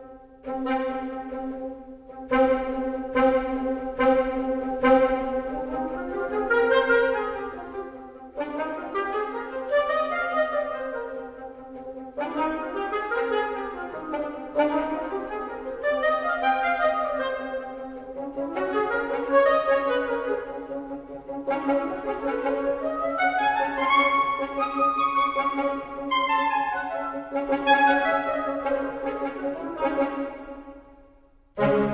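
Sampled woodwind ensemble recorded in octaves, the short staccato articulation of Spitfire Audio Originals Epic Woodwinds on the room mic, played live from a keyboard. Quick staccato runs climb and fall again and again over a steady low pitch.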